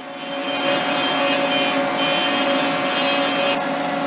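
CNC milling machine cutting an aluminium block with an end mill under flood coolant: the spindle and cut make a steady high whine with several held tones over a hiss of coolant spray. The high whine and hiss cut off sharply near the end.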